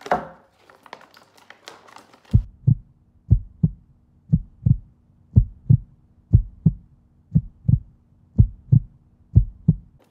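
Heartbeat sound effect: pairs of low thumps in a lub-dub rhythm, about one beat a second, starting about two seconds in, over a faint low hum.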